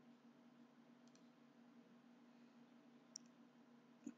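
Near silence over a faint steady low hum, broken by faint computer mouse clicks: a quick pair about a second in and a sharper single click about three seconds in.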